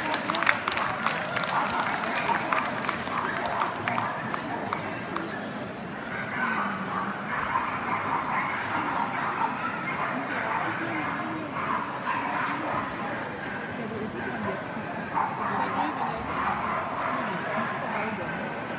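Crowd chatter in a dog show hall, with dogs yapping and barking at intervals, and scattered clapping at the start.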